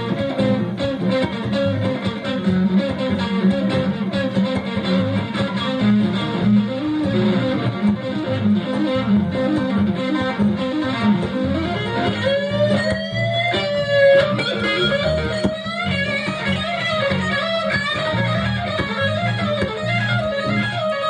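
Electric guitar soloing in fast note runs over bass guitar, with rising bent notes about two-thirds of the way through.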